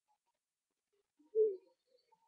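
One short, low hum from a person's voice, falling slightly in pitch, about one and a half seconds in; otherwise quiet.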